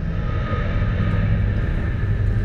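A loud, steady low rumble with faint held higher tones above it, with no clear start or stop.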